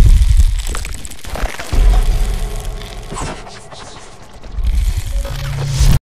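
Sound effects of an animated logo sting: a deep bass boom at the start, another about two seconds in, and a low swelling rumble near the end, with brief whooshing sweeps between them.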